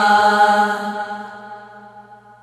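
Women's voices chanting a Shia noha lament, holding the last sung note on one steady pitch as it fades away over about a second and a half.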